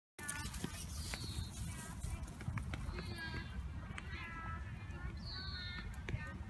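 High-pitched voice calling out several times in short, rising and falling calls over a steady low rumble of wind on the microphone.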